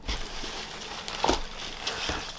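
Shredded paper packing rustling and crackling as hands dig through it in a cardboard box and lift a bundle out, with a few sharper crunches.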